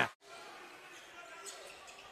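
Faint ambience of an indoor basketball stadium, a low even hall noise with a faint short sound about one and a half seconds in.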